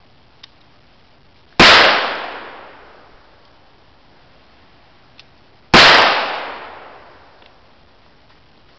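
Two handgun shots about four seconds apart, each sharp and very loud, with a long echo dying away over a second and a half.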